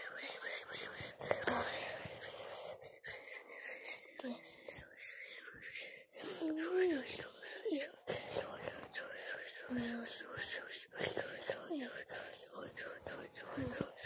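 A child whispering and talking softly under his breath, with scattered clicks and rustles.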